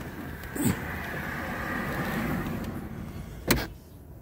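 A car door shutting with a single sharp thump near the end, after a few seconds of steady running noise from the idling 2.4 Ecotec four-cylinder as someone climbs into the driver's seat.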